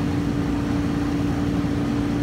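Steady machine hum with one constant low tone underneath a low rumble.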